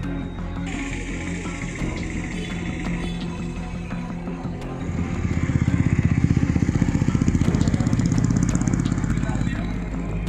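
Music plays while a small vehicle engine runs close by. The engine's rapid, steady pulsing is loudest from about five seconds in until near the end.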